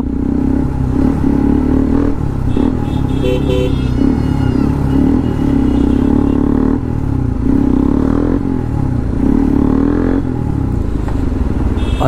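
Sport motorcycle's engine running loud through a single silencer while riding, its note rising and falling in stretches as the throttle is opened and eased off.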